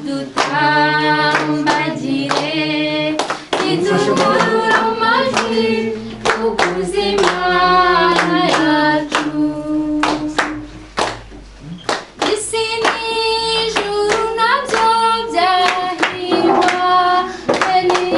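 A group of voices singing to steady hand clapping, about two claps a second. The singing and clapping ease off briefly about two-thirds of the way through, then pick up again.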